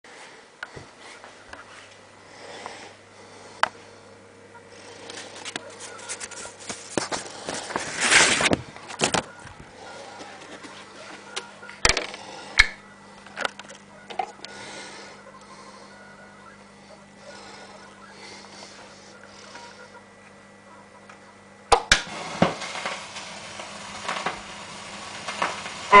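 Scattered handling clicks and rustles around a turntable. About four seconds from the end, a sharp click as the stylus lands on a spinning 7-inch vinyl single, then a steady hiss and crackle of surface noise from the lead-in groove.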